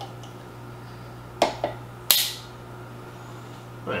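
Two short clicks about one and a half seconds in, then a louder, sharper noise that trails off, from a tool being worked at the wax seal and cork of a whiskey bottle, over a steady low hum.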